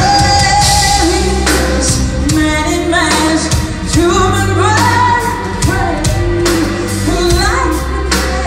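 Live doom metal band: a woman singing a gliding melody over electric guitar, bass and a drum kit keeping a steady beat.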